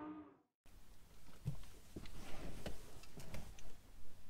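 Intro music fading out at the very start, then a moment of silence and quiet car-cabin ambience with scattered soft clicks and light knocks, as of someone shifting in the seat and handling things.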